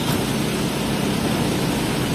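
Hino RK8 bus's diesel engine running steadily with a low hum as the bus moves slowly off.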